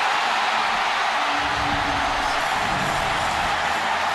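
Baseball stadium crowd cheering a walk-off home run in a steady, unbroken roar.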